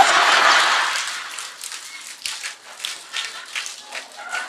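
Audience laughing together, loudest at first and dying away over the first second or two, followed by faint scattered rustles and clicks from the room.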